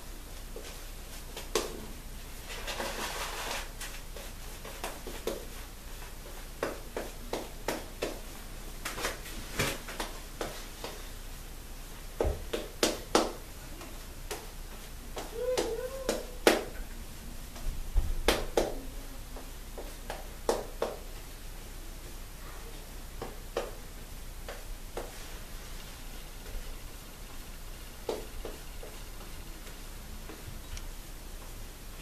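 Double-edge safety razor with a Laser Ultra blade scraping through lathered stubble in short, irregular strokes, with small clicks and knocks between them.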